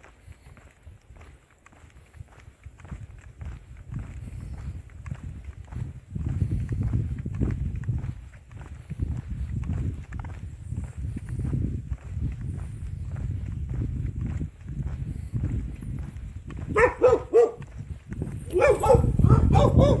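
Footsteps on a paved road under a low rumble that grows louder a few seconds in. Near the end come two bursts of loud, short pitched calls.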